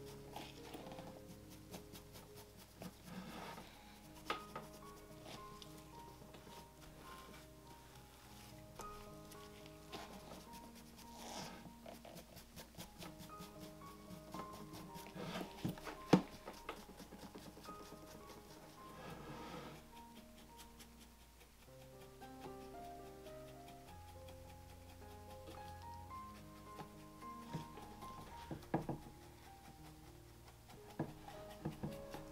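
Soft background music with a slow, held melody. Beneath it are faint, scattered light taps and rubbing from a small dye applicator worked over the leather toe of a dress shoe.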